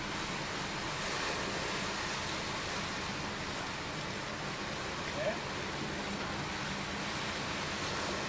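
Steady rushing outdoor background noise with a faint low hum underneath, and a brief faint pitched blip about five seconds in.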